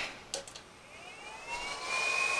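Small San Ace 40 mm cooling fans inside an e-bike hub motor spinning up from rest after a click: a whine that rises steadily in pitch and levels off near the end as the fans come up to speed.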